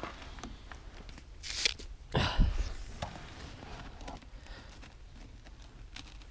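Plastic water bottle being handled and its cap worked by hand, with a few short crackling rustles about one and a half and two seconds in.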